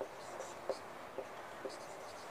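Marker pen writing on a whiteboard: short, faint strokes with a few light taps as letters are written.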